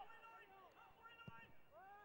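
Faint, distant voices, with a single low thud a little over a second in.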